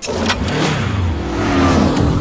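A loud, rushing, engine-like roar sound effect. It starts abruptly with a few sharp cracks, then runs on as a steady rush over a low hum.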